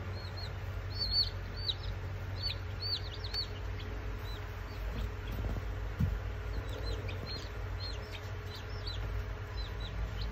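Newly hatched baby chicks peeping: short, high-pitched chirps coming in bursts, over a steady low hum. A brief bump sounds about six seconds in.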